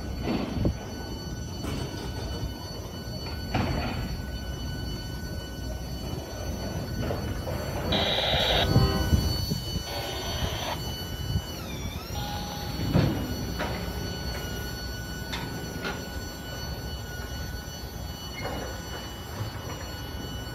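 Freight cars of a CSX tie distribution train rolling slowly past: a steady rumble of steel wheels on rail with scattered clanks and knocks, a short high squeal about eight seconds in and a squealing tone that dips and recovers around twelve seconds.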